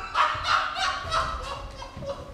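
A man's voice giving a run of short, wordless excited cries, with low thuds of footfalls on the stage floor.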